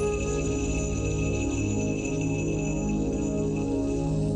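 Instrumental music: sustained chords on a Yamaha MX61 synthesizer keyboard, held at an even level with a thin steady high tone above them.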